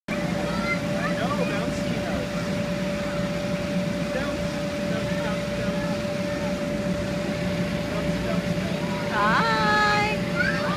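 Faint scattered voices over a steady, constant machine hum. Near the end, a high voice calls out once, sliding down in pitch.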